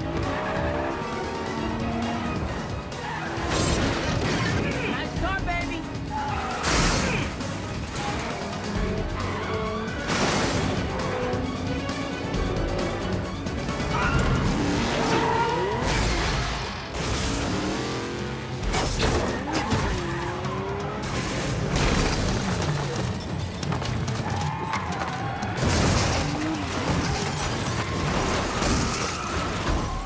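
Film action soundtrack of a street race: several car engines revving hard and rising and falling in pitch through gear changes, with tyres skidding and squealing and several crashes and impacts, all over a music score.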